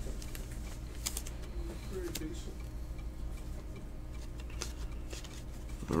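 Trading cards and their plastic sleeves being handled: scattered light clicks and rustles over a steady low hum.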